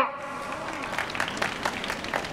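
Crowd applauding: many separate hand claps, starting just as a spoken sentence ends.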